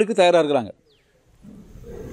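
A man's voice through a microphone in long, drawn-out tones, stopping less than a second in, followed by a brief hush.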